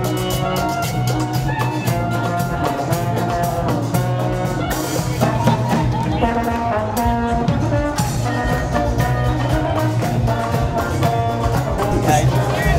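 Cumbia band playing, with a brass melody over a steady bass line and percussion; a cymbal-like wash comes in about five seconds in.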